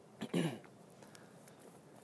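A man clearing his throat once, a short gruff burst about a quarter second in; after it only faint outdoor background.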